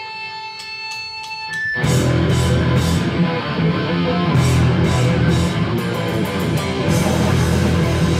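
Live hardcore punk band starting a song: an electric guitar rings on a held, steady note, then a little under two seconds in the full band comes in loud with distorted guitars, bass guitar and drums with crashing cymbals.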